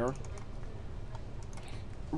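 A few light keystrokes on a computer keyboard.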